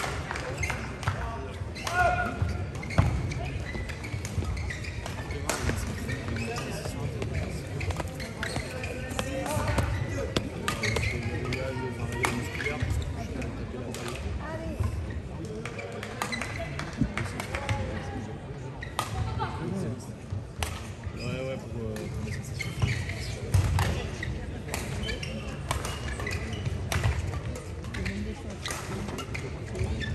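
Badminton rally in a large hall: repeated sharp racket strikes on the shuttlecock, with background voices.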